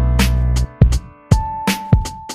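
Instrumental music with sharp drum hits over held keyboard notes and a deep bass line; the bass drops out about two-thirds of a second in, leaving sparse beats and a sustained note.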